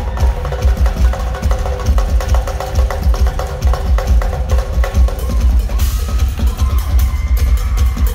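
Live drum solo on a Pearl rock drum kit: fast, dense strokes over a continuous run of bass drum hits, with cymbal and tom strikes throughout. A few held tones sound underneath the drumming.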